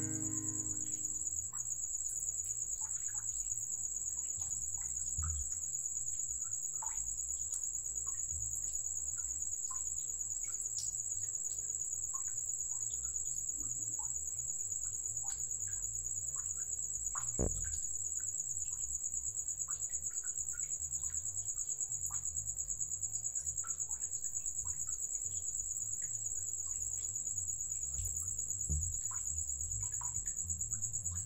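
Steady high-pitched chirring of insects, with scattered faint bird chirps and a low rumble underneath. Guitar music fades out in the first second or two.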